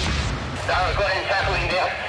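Indistinct, thin-sounding voice chatter over a hand-held two-way radio, starting about a second in, over low booming thuds.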